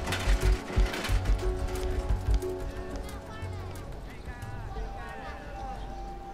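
Background music with long held notes. A run of low thumps comes in the first two and a half seconds, and faint indistinct voices come near the middle.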